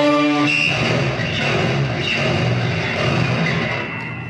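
Live jazz-fusion band of electric guitar, electric bass, drums, keyboard, trumpet and tenor sax playing. A held chord at the start cuts off about half a second in, giving way to a denser, busier passage without held notes.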